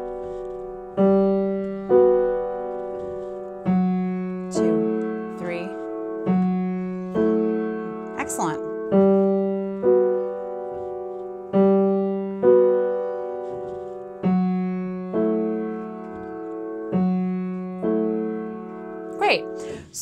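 Yamaha upright piano playing a slow, repeating left-hand ostinato in 3/4 time. Each bar is a bass note followed by a two-note chord, about one stroke a second, with the notes left to ring and decay. Two bars of a G major 7 shape (G, then B and F-sharp) alternate with a D-over-F-sharp shape (F-sharp, then A and E).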